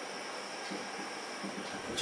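Faint strokes of a marker pen writing on a whiteboard, over a steady background hiss.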